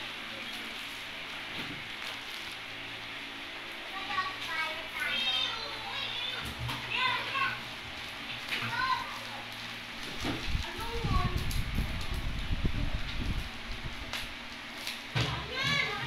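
Children's high voices calling and playing in the background in short bursts, over the rustle of plastic bubble-wrap packaging being handled, with a stretch of low bumping and handling noise about ten seconds in.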